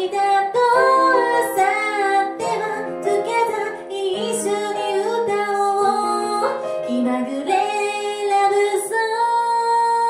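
A woman singing a Japanese song with grand piano accompaniment. Near the end she holds one long note with vibrato.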